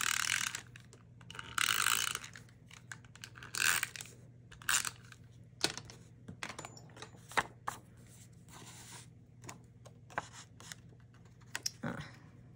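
Adhesive being run onto the back of a cardstock panel: a few short zipping strokes of a tape runner in the first seconds, followed by scattered light clicks and paper handling as the panel is moved.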